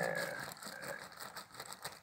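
Faint rustling and crinkling of an orange emergency bivvy bag's thin plastic shell with aluminized lining as a hand rubs and lifts it.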